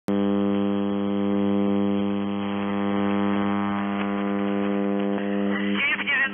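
Shortwave receiver audio in single sideband on 5400 kHz: a steady buzzing hum made of many evenly spaced interference tones, with no signal on the channel yet. A voice on the radio starts just before the end.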